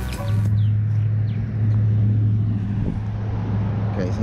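A steady low hum like an engine running, holding one low pitch over a rumble, with a few faint bird chirps about a second in.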